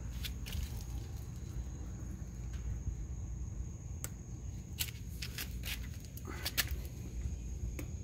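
Steady low rumble of outdoor background and wind on the microphone, with a few faint scattered clicks and taps, likely handling noise from a phone moved around a car wheel.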